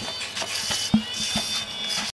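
Steel hand trowel scraping and tapping through wet pebble-wash mix (small red stones in cement). A few short knocks come from the blade striking the mix, the sharpest about a second in.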